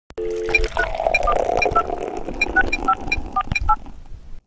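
Intro sound effect: a quick run of short electronic beeps, about four a second, alternating between a high note and lower notes, over a steady hiss, cutting off just before the end.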